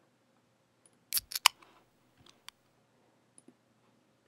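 Computer mouse clicks while switching between applications: three sharp clicks in quick succession a little over a second in, then a single click and a few faint ticks.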